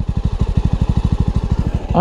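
Jawa 300's single-cylinder engine idling, heard close to the exhaust silencer as a steady, even train of exhaust pulses.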